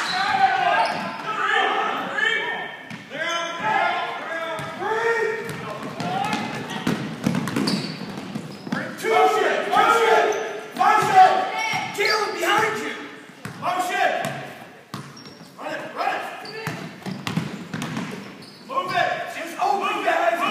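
Basketball bouncing on a hardwood gym floor during play, under indistinct shouting and talk from players and spectators, all echoing in the large gym.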